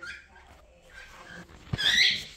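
Cockatiel giving a short, high-pitched call near the end, just after a low bump, with faint soft chirps about a second before it.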